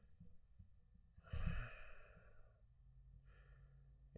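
A man sighing: one long breath out about a second in, with a low thump as it begins, then a fainter breath near the end.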